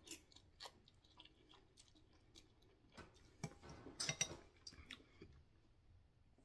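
A person chewing a mouthful of ramen noodles: faint, scattered small mouth clicks, a little louder for a moment about four seconds in.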